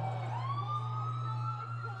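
An emergency-vehicle siren wailing, its pitch dipping and then rising about half a second in and holding high, over a steady low hum.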